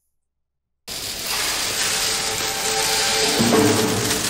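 Dead silence for almost a second, then a TV drama's soundtrack cuts in abruptly: background music with steady held notes over a dense noisy bed.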